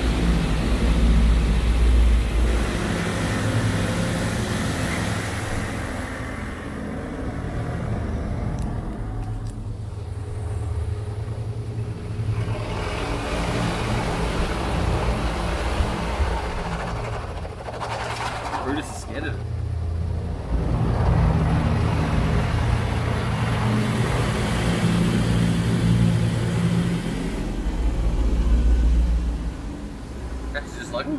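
Automatic car wash heard from inside the car: water spray hissing against the body and windows over a low machinery rumble. It is loudest for the first few seconds, eases off in the middle, and builds up again near the end as the wash passes over the car.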